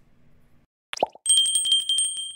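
Subscribe-button animation sound effects: a short pop falling in pitch about a second in, then a bell ding with quick rattling strikes that rings on and fades.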